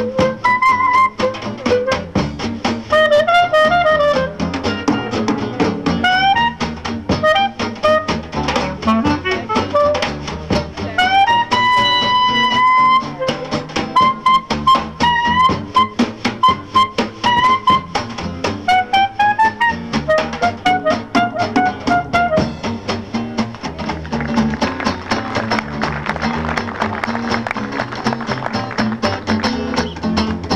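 Clarinet playing a jazz solo over a band of double bass, drums and guitar, in running phrases with one long held note about twelve seconds in. Near the end the clarinet line stops and the rhythm section carries on.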